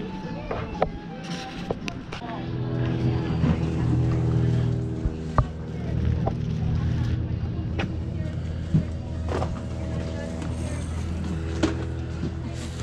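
A steady engine hum that settles in about two seconds in and holds an even pitch, with scattered light knocks and clicks over a murmur of voices.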